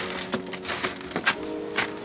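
Live oysters clattering against one another as they are shaken out of a mesh grow-out bag into a plastic basket: an irregular string of sharp shell-on-shell clicks and knocks, over soft background music.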